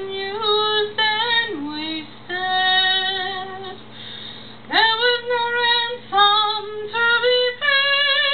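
A woman singing a slow ballad solo in long held notes, with a short pause for breath about four seconds in.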